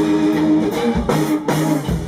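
Live instrumental rock trio: electric guitar and electric bass playing sustained notes over a Sonor drum kit, with a few drum hits cutting through.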